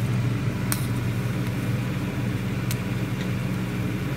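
A steady low mechanical hum, like a fan or appliance motor running, with two or three faint light clicks.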